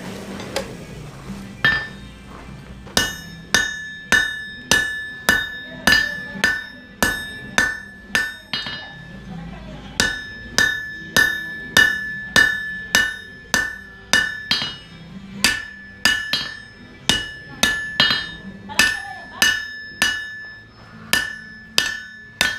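Hand hammer striking red-hot 1080 carbon steel on an anvil while forging a knife blank: steady blows about one and a half a second, each with a bright ring from the anvil. There is a short break in the hammering partway through.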